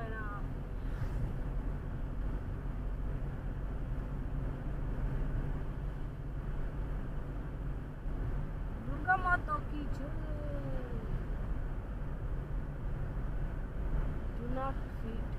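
Car cruising at about 30 mph, heard from inside the cabin as a steady low road and engine rumble. A brief voice sounds about nine seconds in, rising and then falling in pitch.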